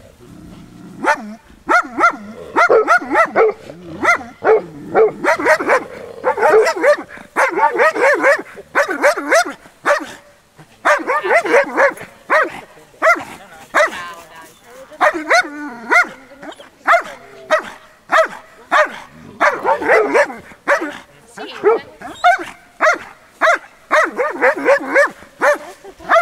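Dog barking in rapid runs of short, repeated calls, with only brief pauses between the runs.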